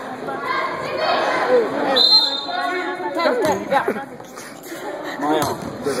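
Young players' voices talking and calling out, echoing in a large gymnasium, with a basketball bouncing on the hardwood floor. About two seconds in, a steady high tone lasts about a second.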